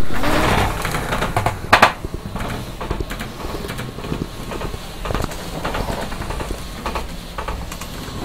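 Whiteboard eraser rubbing across a whiteboard in uneven strokes, with knocks and rustling from someone shifting in a swivel chair; a sharp knock about two seconds in.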